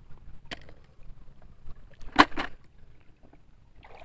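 River water splashing as hands move through it: a light splash about half a second in and a louder one about two seconds in, over a faint low rush.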